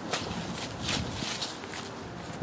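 Footsteps on a sidewalk strewn with fallen autumn leaves, with a rustle of leaves at each step, about two steps a second.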